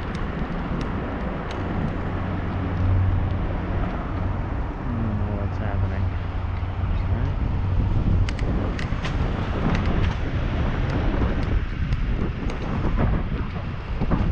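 Wind rushing over an action camera's microphone on a moving bicycle, with road rumble and a steady low hum through the first half. Scattered sharp clicks come in just past the middle.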